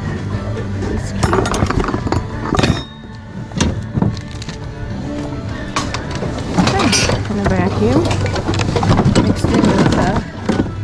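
Background music with steady held tones, under the murmur of other shoppers' voices and the scattered clatter of household goods being handled and dropped in plastic bins.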